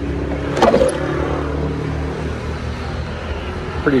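Isuzu Trooper's side-hinged rear door unlatched and swung open with one sharp metallic clunk a little over half a second in. A steady low hum runs underneath.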